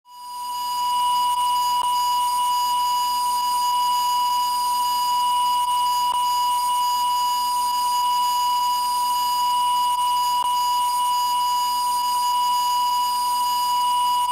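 Broadcast line-up test tone played with colour bars: one continuous steady pitch, fading in over the first second and then held at a constant level.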